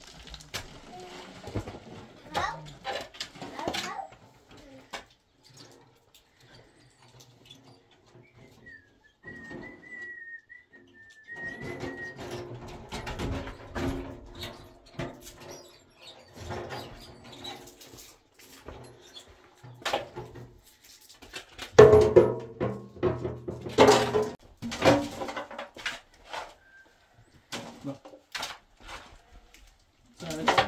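Steel shovels scraping into loose soil and broken rubble and dumping it into a metal wheelbarrow: irregular scrapes, knocks and clods landing, busiest a little past two thirds of the way in. A bird gives a short wavering call about a third of the way in.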